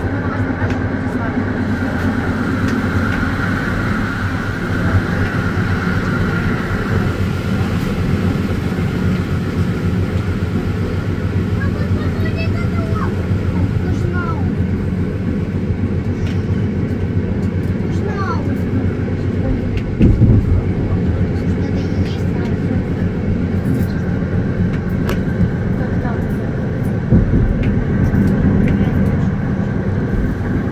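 Electric train running along the track, heard from on board: a steady low rumble of wheels on rail with a low motor hum, and louder jolts about two-thirds of the way through and again near the end as it runs over joints or points.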